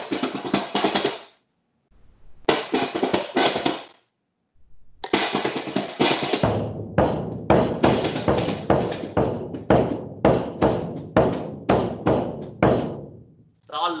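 Drum strokes played by hand live, in three short runs, the last settling into a steady beat of about three strokes a second, heard through the thin, gated audio of a video call.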